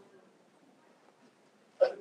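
Near silence (room tone) in a pause in speech, broken near the end by a voice starting to speak again.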